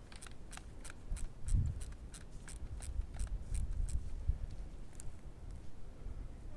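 A steady run of short, sharp clicks, about three a second, that stops about four seconds in, with one more click near the end. A low bump comes about one and a half seconds in, over a low rumble.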